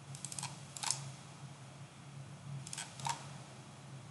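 Computer mouse clicking in two short runs, one right at the start and one a little under three seconds in, each a few quick small clicks ending in a sharper one, over a faint steady low hum.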